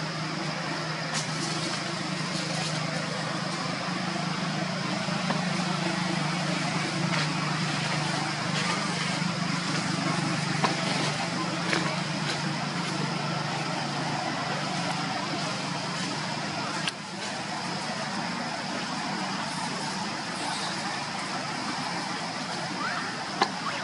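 Steady outdoor background noise with a low motor hum, as of a vehicle engine running, that fades out about three quarters of the way through, over a constant thin high whine and a few faint clicks.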